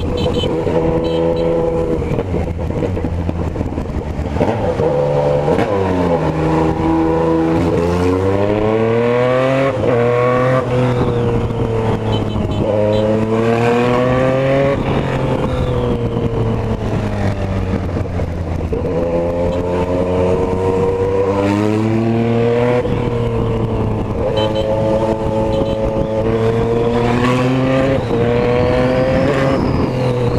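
Yamaha MT-09's inline three-cylinder engine heard from the rider's seat, revving up and easing off several times as the bike accelerates and slows in traffic.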